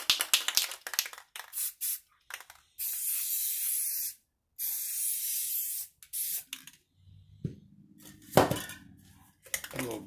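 Aerosol can of Kona brown spray paint rattled a few times, then sprayed in two even hissing bursts of about a second and a half each, laying colour onto wet epoxy. A sharp knock follows near the end.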